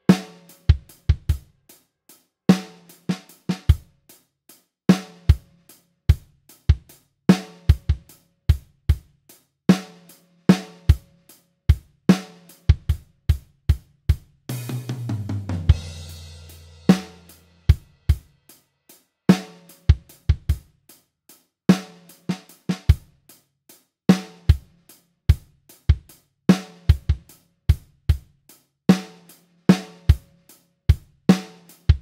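Programmed acoustic drum kit (EZDrummer) playing a slow blues groove at 50 bpm: kick drum, hi-hat and a snare hit about every two and a half seconds. About halfway through, a cymbal crash rings over a tom fill that drops in pitch, then the groove carries on.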